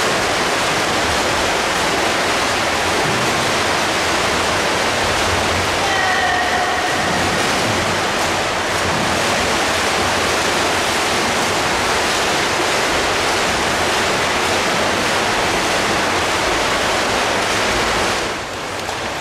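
Several swimmers splashing through freestyle lengths, a steady wash of churning water that echoes round an indoor pool hall.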